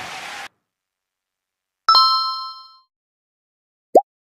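A single bright bell-like ding from a subscribe-button animation, ringing out with several tones and fading over about a second, followed near the end by a very short rising blip.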